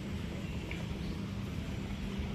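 Steady rush of a swollen, fast-flowing flood river, with a low steady hum underneath.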